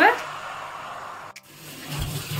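Hot oil in a frying pan sizzling as a creamy yogurt marinade is poured in, a steady hiss that fades and then cuts off abruptly about a second and a half in.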